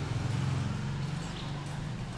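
Low, steady rumble of a vehicle engine running nearby on the street.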